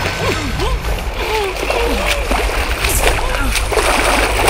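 Water splashing and churning, with sharper splashes about three seconds in and near the end, over short strained vocal cries and grunts.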